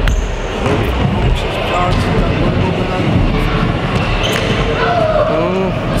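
Indistinct voices in a sports hall, with a few sharp knocks of a futsal ball bouncing on the court floor.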